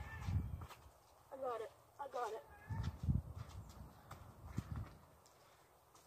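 A boy's footsteps on slippery, muddy ground, with low thuds, and two short high-pitched wordless exclamations about one and a half and two seconds in as he nearly slips.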